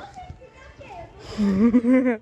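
Boys' voices with laughter, and a louder stretch of voice in the second half.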